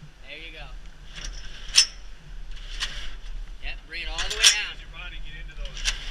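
Aluminium extension ladder being extended by hauling on its halyard rope, with rasping scrapes as the rope runs and the fly section slides. Sharp metallic clanks come from the ladder, the loudest about two seconds in and again midway.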